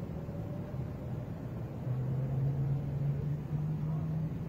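Steady low rumble and hum of outdoor background noise, with a low drone that gets louder about two seconds in.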